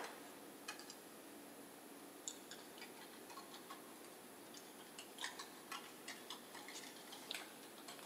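Faint, irregular small clicks and taps over quiet room tone: one sharper click at the start, a few scattered ones, then a quicker run of clicks about five seconds in.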